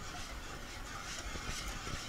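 Whisk stirring brine in a pot, a few faint scrapes over a steady low background hum.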